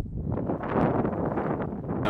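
Wind buffeting the microphone: a low, steady rumble with a few faint rustles through it.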